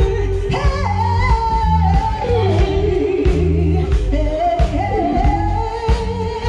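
Live rock band playing: a woman's voice sings a sustained, gliding melody over electric guitars and a drum kit, with a steady pulsing beat of kick drum and bass underneath.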